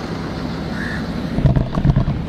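Steady low cabin rumble of a Range Rover Sport moving slowly, heard from inside the car, with a few low thumps in the second half.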